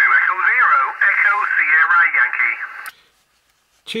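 A distant amateur station's voice answering over HF single-sideband, heard through the Xiegu X6100 transceiver's speaker: thin, narrow radio speech that stops about three seconds in.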